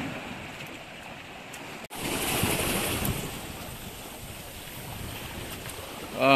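Sea surf washing over rocks at the shoreline, a steady rush of water noise, broken by a short dropout about two seconds in.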